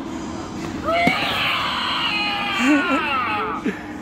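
Spirit Halloween 'Sitting Scarecrow' animatronic going off: a loud, high-pitched shriek starting about a second in and sliding down in pitch for about three seconds, with a lower growling voice under its end.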